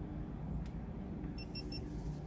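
A GoPro action camera mounted on a cap beeping a quick run of about four short, high beeps, the signal that it has started recording, over a low steady rumble.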